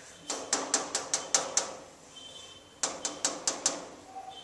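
An iron door rapped on in two quick runs of knocks, about seven and then about six, each run with a faint metallic ring.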